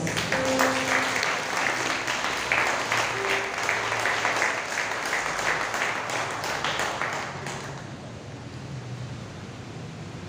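Congregation applauding, the clapping dense at first and then thinning and fading out about seven or eight seconds in.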